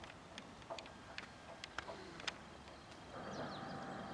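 Scattered sharp clicks and ticks over a quiet background. About three seconds in, a steadier hiss starts, with a few faint high chirps.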